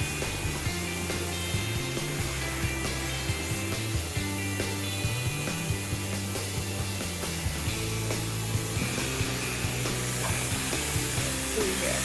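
Background music with a stepping bass line, over the steady buzz of electric dog-grooming clippers shaving through a shih tzu's matted coat.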